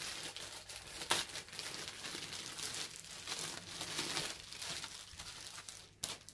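Clear plastic packaging bag crinkling and rustling as hands work a printed fabric balaclava out of it, with a sharp crackle about a second in.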